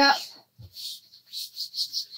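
A wet sheet of rice paper being wiped across a craft mat: several soft, short rustling swishes.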